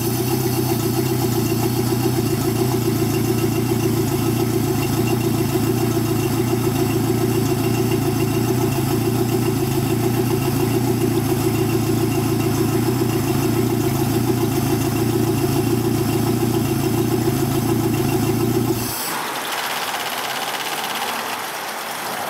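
Four-stroke outboard motor running at a steady idle with its cowling off, then shutting off abruptly about 19 seconds in, after which a steady, quieter hiss remains.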